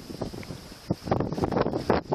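Wind buffeting the microphone on the deck of a sailboat under way, in irregular gusts that grow denser and louder in the second half.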